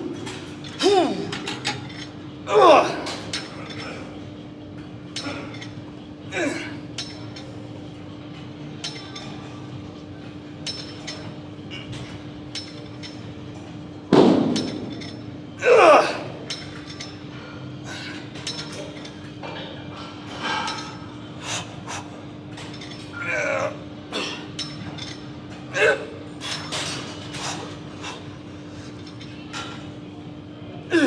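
A cable pulldown machine in use: metal clinks and clicks from the weight stack and cable hardware, with several short voice sounds that fall in pitch, the loudest about halfway through. A steady low hum runs underneath.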